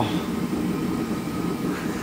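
Steady low machine hum with a faint, thin high whine above it.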